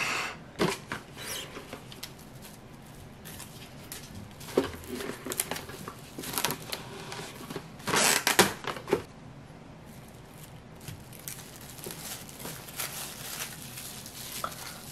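Plastic cling wrap rustling and crinkling as it is pulled out, torn off and folded around a rice cake, with a few light clicks and knocks on the tabletop. The loudest rustle comes about eight seconds in.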